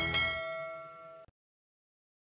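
A bell-like chime sound effect for a subscribe-button and notification-bell animation: several tones ring together and fade, then cut off abruptly about a second and a quarter in.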